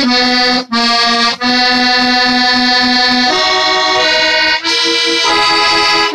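Squeeze box playing a tune in held chords, with short breaks between notes and a change of chord about halfway through.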